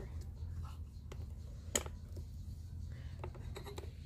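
Quiet handling noise: light rubbing and scratching, with a few sharp clicks, the clearest a little under two seconds in, over a steady low rumble.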